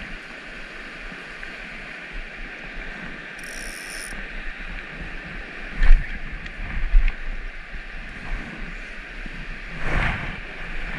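Steady rush of creek water, with a short buzzing ratchet from a fly reel's click-and-pawl drag, about three and a half seconds in, as line is pulled off it. Two loud dull knocks come near the middle, a second apart.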